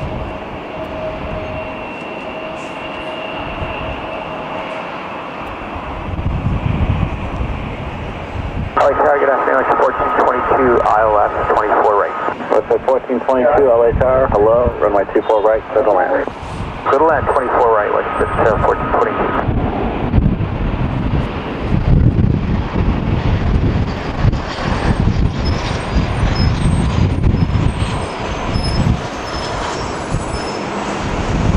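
Twin turbofan engines of an Embraer regional jet spooling up for its takeoff roll: a low rumble that swells about six seconds in and keeps going as the jet accelerates away. Through the middle, for about ten seconds, a thin, narrow-sounding air traffic control radio voice with a steady whistling tone talks over it.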